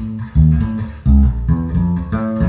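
Music Man StingRay four-string fretted electric bass being plucked, a short phrase of low notes with new notes about every half second.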